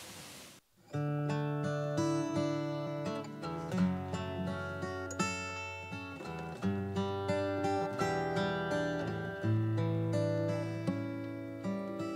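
Acoustic guitar playing the instrumental introduction to a song, individual notes ringing over sustained bass notes, starting about a second in after a brief silence.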